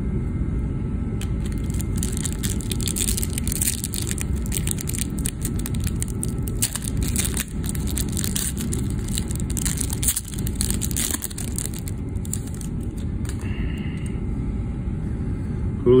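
Plastic card-pack wrapper crinkling and tearing as a pack of baseball cards is ripped open and the cards handled, in a rapid run of crisp crackles that fades out near the end. Under it runs a steady low rumble.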